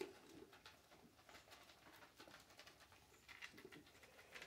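Near silence: faint rustling and small clicks of goats feeding at a plastic bucket on a hay-covered floor, with a few faint low animal calls at the start and again near the end.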